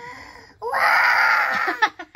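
Toddler girl crying out in one long, loud wail lasting about a second, starting just over half a second in, then a few short catches of breath near the end. It is an impatient wail at having to wait her turn.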